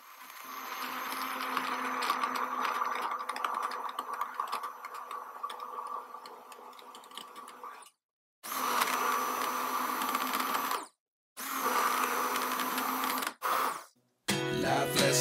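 Handheld immersion blender motor running steadily while blending a banana and soy-milk drink in a tall cup. It fades somewhat, then cuts off abruptly and starts again three times.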